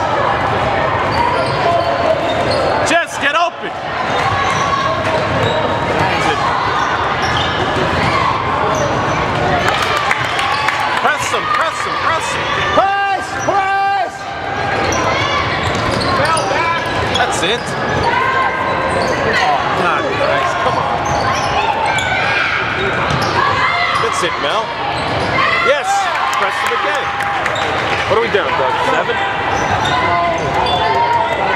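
Basketball game in a gym: a ball bouncing on the court floor amid a steady mix of crowd voices and shouts, echoing in the large hall.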